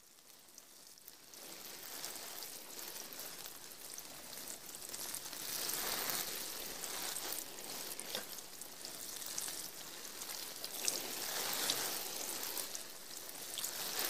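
Rain falling: a steady patter with scattered single drops, fading in over the first two seconds.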